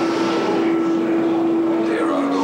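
A single low note held steady over a constant rushing noise, from the dark ride's soundtrack and effects.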